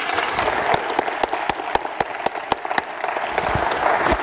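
Audience applauding after a choir performance, with one pair of hands clapping close by at a steady four or so claps a second.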